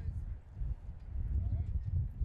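Standardbred pacer standing hitched to its sulky, its hooves shifting and clopping lightly on the track surface as it is held by the head. A heavy, uneven low rumble runs under it, with faint voices.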